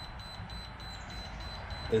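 Steady low hum of a cheap PC water-cooling pump running a loop filled with chocolate milk, slow and nearly stalled (the flow meter reads 30–35, then 0 litres per hour), with a faint steady high-pitched whine.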